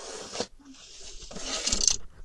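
A pencil scratching along a ruler's edge on card, marking a straight cutting line: a short stroke, then a longer one that grows louder toward the end.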